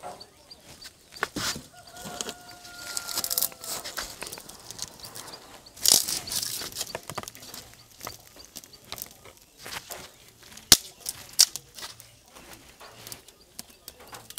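Dry sticks and kindling being handled and broken for a small wood fire: irregular clicks, snaps and knocks, with some rustling. A sharp snap about ten and a half seconds in is the loudest.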